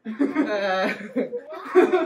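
A drawn-out, hesitant "uhhh" in a person's voice, followed by short bursts of laughter and chuckling.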